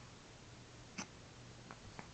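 A baby's small mouth sounds: a short lip smack about a second in and a fainter one near the end, over a faint steady hum.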